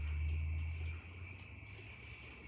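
Crickets chirping in a steady high trill, over a low rumble that drops away about a second in.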